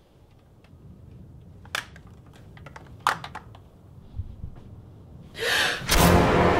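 A few sharp clicks and knocks in a quiet small room, the loudest about three seconds in, then a woman's sharp, frightened gasp near the end.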